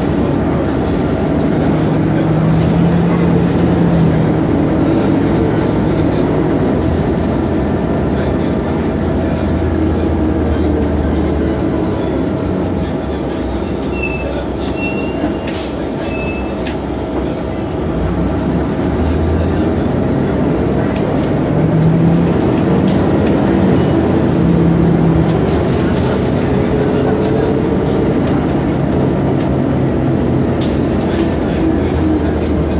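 Inside a 2002 New Flyer D40LF diesel bus under way: its Detroit Diesel Series 50 engine and Allison B400R automatic transmission running under steady road noise, twice building up with a high whine that rises and then fades away. A few short high beeps sound near the middle.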